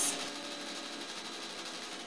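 A lab droplet robot's motors running: a steady mechanical whir with a few steady hum tones underneath.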